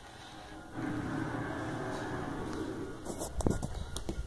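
A drawn-out rough noise for about two seconds, then several sharp knocks and bumps near the end from the camera and plastic toy figure being handled and moved.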